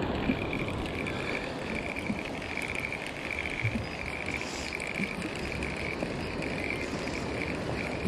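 Spinning reel being cranked to wind in line, its gears whirring in a steady pulsing rhythm of about two pulses a second.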